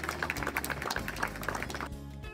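An audience applauding, a dense run of hand claps.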